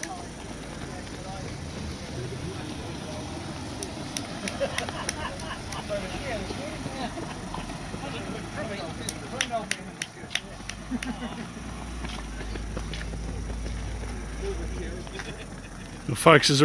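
Roadside outdoor ambience: distant voices talking and scattered sharp taps, with a passing vehicle's low engine hum through the second half. The bagpipes are not playing.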